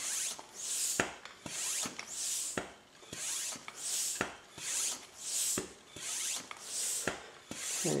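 High-pressure airgun hand pump being stroked steadily, building pressure in the air cylinder of an air-over-hydraulic pressure multiplier. It gives a rhythmic hiss of air on each stroke, roughly one a second, with sharp clicks between strokes.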